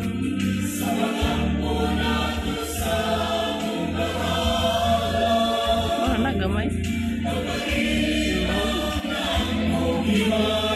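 Choral music: a choir singing in harmony, with long held notes.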